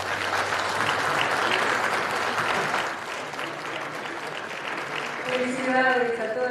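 Audience applauding, loudest for the first few seconds and then settling to a steadier, lower level.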